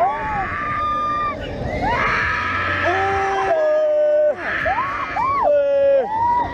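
Several riders screaming on a fairground thrill ride as it swings them upside down: long held screams that overlap, rising and falling in pitch.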